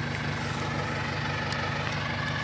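Farm tractor engine idling steadily, a low even hum that holds the same pitch throughout.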